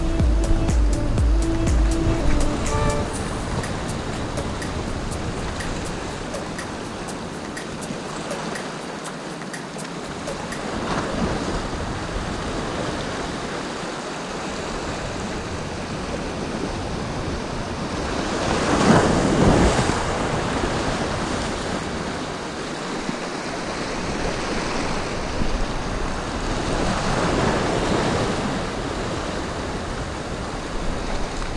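Sea waves surging and washing over a rocky reef shelf. The wash swells and eases several times, loudest about two-thirds of the way through.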